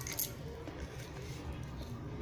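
Faint, dry clicks and small crunches from a baked white chalk-paste diya being eaten, heard over a low steady hum; the sharpest click comes about a fifth of a second in.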